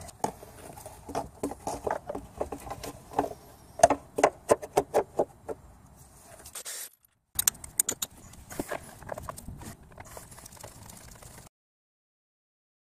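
Hand tools clicking and clinking against metal fasteners while bolts and nuts in an engine bay are tightened, in a run of irregular sharp ticks with a quick flurry in the middle. A brief cut splits the run, which resumes more sparsely and then stops abruptly.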